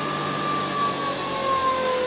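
Electric motor and spinning rotor of a homemade generator rig, giving a steady whine of several tones that slowly fall in pitch as it winds down.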